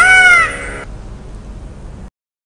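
A single peacock call at the start, one loud cry that rises and then falls in pitch. It sits over the fading tail of an intro jingle's chiming music, which drops away and cuts off at the end.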